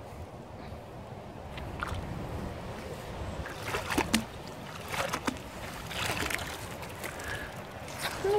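A fishing magnet hauled up through canal water on its rope, sloshing and splashing as it comes to the surface, with a few short sharp splashes and drips from about midway.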